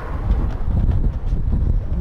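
Wind buffeting the camera microphone: a low rumble that grows louder about half a second in.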